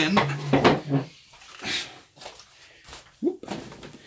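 A man's voice for about the first second, then handling noise from a Jing Gong G36-style airsoft rifle being swung up close to the microphone: two short rustles or knocks, one near the middle and one near the end.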